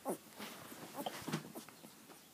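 Husky puppy giving a few short yips and whines while being handled, one falling in pitch just after the start and more about a second in.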